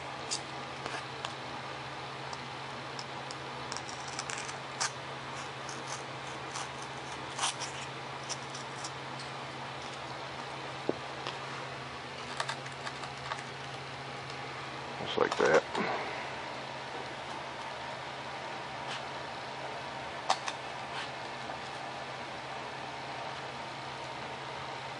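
Hands handling and fitting small foam model-airplane parts at the tail: scattered light clicks and rustles over a steady low hum, with one louder brief burst of handling noise about fifteen seconds in.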